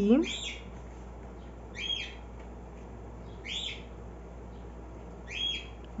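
A bird calling four times at an even pace, a short high call about every second and a half to two seconds.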